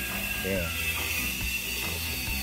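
Construction noise from a building site next door: a steady mechanical rumble running under the garden scene.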